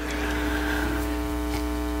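Steady electrical mains hum and buzz, an even drone that holds unchanged through the pause.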